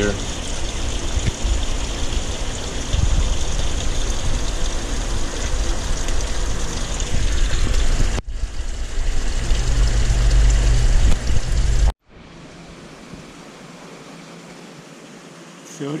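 Loud steady rush of water in a large aquarium's filtration plumbing, with a deep rumble underneath. It cuts off suddenly about twelve seconds in, leaving a much quieter steady hum.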